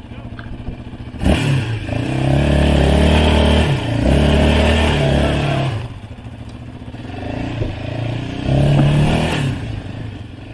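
Yamaha sport quad's engine idling, then throttled up sharply about a second in and pulling hard in two long surges, easing off around six seconds before pulling again and dropping back near the end.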